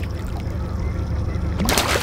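A hooked king salmon splashing at the water's surface, with one sharp splash starting near the end, over a steady low rumble.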